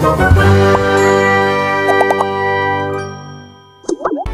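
A bell-like chime sound effect: several tones struck together ring out and fade away over about three seconds, with a few quick short notes around two seconds in and a brief blip just before the end.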